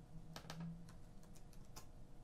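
Faint clicks of computer keyboard keys, a few irregular keystrokes as a new tempo value is typed in and entered.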